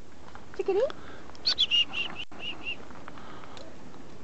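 A chickadee giving its chick-a-dee call: a high note sliding down, then a quick run of about five short dee notes.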